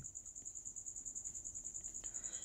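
A cricket chirping faintly in a steady, high, rapidly pulsing trill, about ten to twelve pulses a second.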